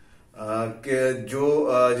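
Only speech: a man speaking Urdu, starting after a short pause and drawing out a word in a long, sing-song way.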